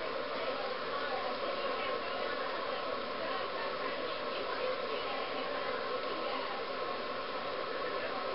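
Steady background hiss with a faint hum, an even room tone with no distinct sound standing out.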